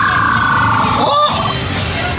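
A person's long, high-pitched held 'aaah' of suspense, falling slowly in pitch and fading out about a second and a half in, with a short rising yelp near the end, over the steady background din of a funfair.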